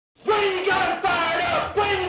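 Group of voices chanting a short phrase in unison, starting a moment in and repeating about every three-quarters of a second: the chanted opening of a punk rock song on the soundtrack.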